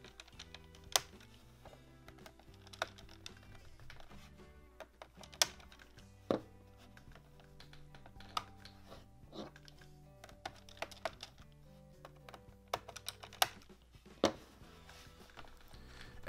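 Soft background music with sharp, irregular clicks and taps about a dozen times: fingers and fingernails working at the plastic RAM cover and case on the underside of an HP 15 laptop, trying to pry the cover off by hand.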